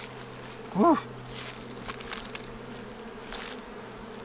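Italian honey bees buzzing around an opened hive, a steady hum.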